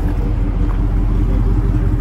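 A steady low rumble with a faint steady hum over it, unchanging throughout.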